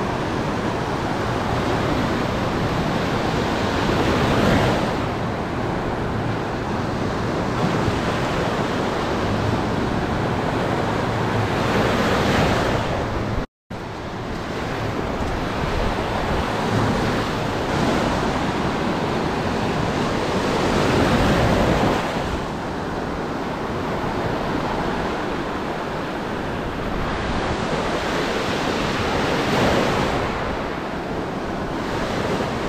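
Ocean surf breaking and washing up a sandy beach, swelling louder every few seconds as waves break, with wind buffeting the microphone. The sound cuts out for a moment about halfway through.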